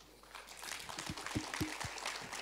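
Audience applause, many hands clapping, starting a moment in and building up, with a few low thumps near the middle.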